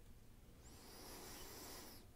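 Near silence: room tone with a faint hiss lasting just over a second, from about half a second in.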